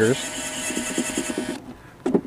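Makita cordless drill running in reverse, backing a screw out of an electrical box cover: a steady motor whine that stops about a second and a half in.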